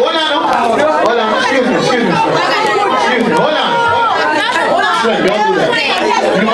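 Loud, steady voices: a man talking into a microphone over the chatter of a crowd in a large room, with no music.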